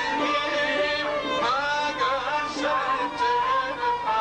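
A man singing a Kurdish song in an ornamented, wavering line, with a sliding phrase about a second and a half in and a held note near the end.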